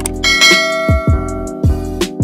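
Background music with a deep kick drum about every three-quarters of a second. Over it come a quick click and then a bell ding that rings out for more than a second: the notification-bell sound effect of a subscribe-button animation.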